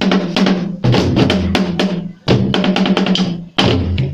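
Several skin-headed wooden drums beaten together in fast, dense rhythmic phrases: deep low strokes under sharp slaps, loud throughout. The playing breaks off briefly about every second and a half before the next phrase.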